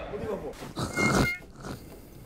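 Stifled laughter: a few short, muffled bursts of a person's voice, the loudest about a second in.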